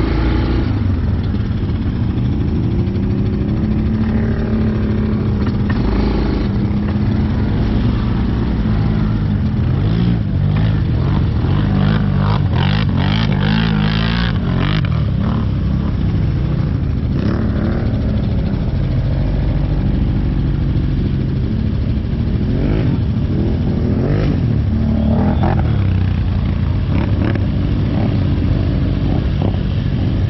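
ATV engines running, with the pitch rising and falling as the throttle is worked. There are stretches of hard revving while an ATV churns through deep mud, the first in the middle and another later on.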